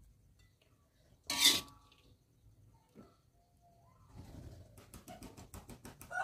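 A metal spoon scraping and tapping on a ceramic plate as fried rice is pressed into a mound. There is one sharp scrape about a second and a half in, then a run of quick light clicks over the last two seconds.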